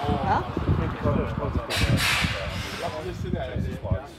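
Several men talking at once, indistinct chatter in a small outdoor group, with a brief burst of hiss about two seconds in.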